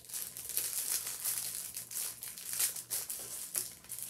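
Clear plastic packaging sleeve crinkling as a rolled diamond painting kit is pulled out of it: a steady run of irregular crackles.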